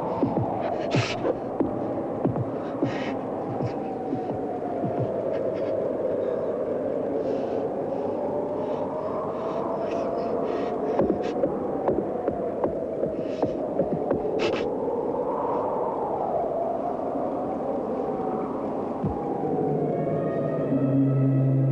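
Horror film soundtrack: an eerie droning hum that slowly wavers up and down in pitch, swelling upward twice, with a low throbbing and scattered short clicks.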